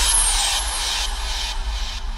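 Sound-design rumble of an animated logo reveal: a deep low rumble with an airy hiss on top, slowly fading.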